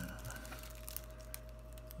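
Faint handling of a shrink-wrapped deck of cards with a utility knife in hand: a few small clicks and light crinkles of plastic wrap, over a steady low hum.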